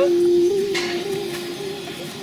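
A person's voice holding one long, steady drawn-out note that slowly fades, carried on straight from the spoken word before it, with a brief rush of noise about a second in.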